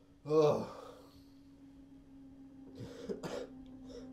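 A man on the floor lets out one loud, pained cough about half a second in, then two weaker coughing breaths near the end. A low, steady musical drone from the film score runs underneath.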